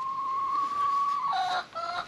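A hen pinned on its side on the ground gives one long, steady, high call, then a few short clucks near the end.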